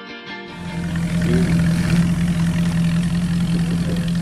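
Background music cuts off about half a second in, giving way to a vintage hot rod coupe's engine running steadily with a deep, even hum, a little louder after the first second.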